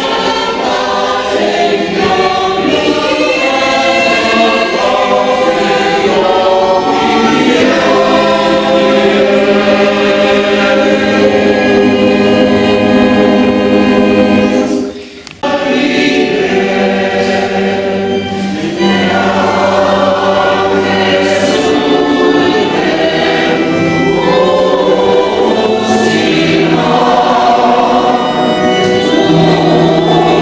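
Mixed choir of men and women singing a hymn inside a church. The singing cuts off abruptly about halfway through and starts again at once.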